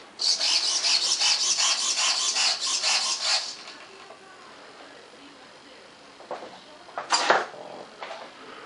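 A rapid, rasping rub lasting about three and a half seconds, then faint room noise with a short sharp rustle about seven seconds in.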